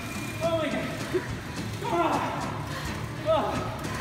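Short, breathless vocal sounds from people worn out by an all-out air-bike sprint: a few brief gasps and wordless exclamations separated by pauses.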